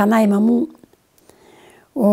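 Speech only: an elderly woman speaking for about half a second, then a pause with only a faint breathy sound.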